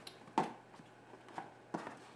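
Handling of a cardboard accessory box and its plastic-bagged cables: a sharp tap about half a second in, then two fainter clicks near the end, with quiet in between.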